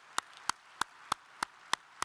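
One person's hand claps close to a podium microphone, sharp and evenly spaced at about three a second, over faint applause from an audience.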